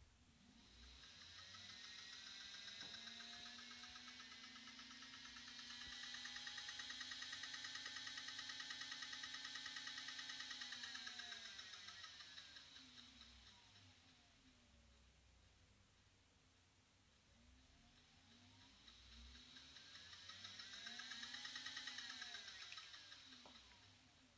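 Faint electric whine of a brushless scooter hub motor driven by a Lebowski controller. It spins up in rising pitch, holds steady at speed for several seconds, then winds down. It spins up and down once more near the end. A fine, rapid tick from a loose washer rides on the whine while it runs fast.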